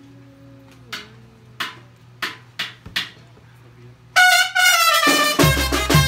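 A few sharp clicks, then a Mexican banda brass band bursts in loudly about four seconds in: trumpets and clarinets on the melody, with a deep sousaphone bass joining a second later.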